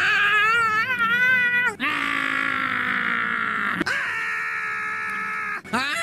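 Squidward's long cartoon scream in several dubbed voices, spliced back to back: each take is a held, high voice lasting about two seconds and cut off abruptly. The first take wavers up and down in pitch and the next ones are steadier.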